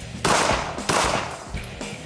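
Two shots from a compact semi-automatic pistol, about two-thirds of a second apart, each followed by a short ring. Background music plays under them.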